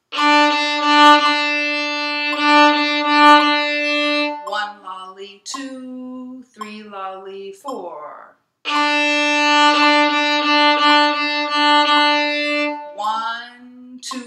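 A violin plays the same note over and over in a rhythm of quarter notes and eighth-note triplets, in two phrases of about four seconds each. A woman's voice is heard in the gap between the phrases and again near the end.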